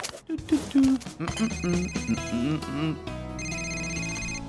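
A short musical jingle, then a mobile phone ringing with an electronic trill ringtone, heard twice: the first about a second in and the second near the end.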